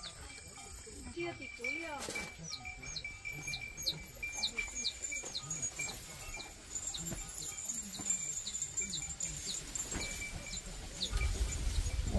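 Outdoor ambience: a bird repeating short, high, falling chirps about twice a second over a steady high-pitched drone, with faint distant voices or animal calls. A low rumble comes in near the end.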